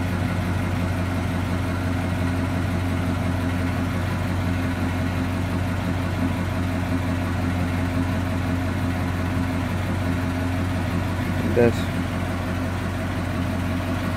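Steady low mechanical hum from the parked 1959 Ford Galaxie, even and unchanging throughout.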